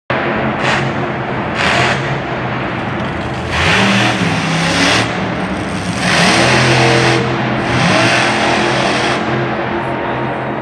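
Monster truck engine revving hard in about five repeated surges of a second or so each, rising and falling in pitch, as the truck spins circles on the dirt arena floor.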